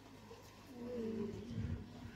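A person's drawn-out, low vocal sound lasting about a second, with a wavering pitch, over faint crowd background.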